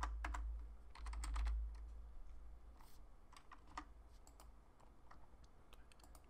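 Computer keyboard keys typed in quick bursts for the first second and a half, then a few scattered single key taps, over a low steady hum.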